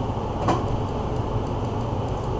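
Steady low background hum with one sharp click about half a second in.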